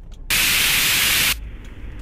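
A burst of radio static, loud hiss lasting about a second, cutting in shortly after the start and stopping abruptly.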